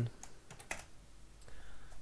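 A few separate computer keyboard keystrokes, sparse clicks spread across about a second and a half.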